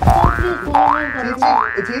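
Cartoon "boing" sound effect, repeated three times about two-thirds of a second apart, each a quick upward-sliding twang.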